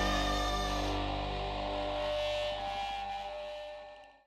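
Outro music: a held chord ringing out and fading away toward silence.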